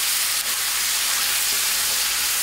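Chicken pieces, onion, tomato and peppers frying over high heat in a cast-iron pot: a steady sizzling hiss, with a spatula turning the food and one faint click about half a second in.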